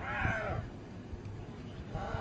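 An injured hyena gives one high, arched squealing call in the first half-second, a sign of distress, over a steady low rumble.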